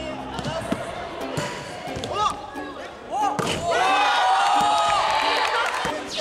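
A few thuds of a basketball on a gym floor. Then, about three and a half seconds in, a group of young men breaks into loud shouting and cheering as a trick shot succeeds.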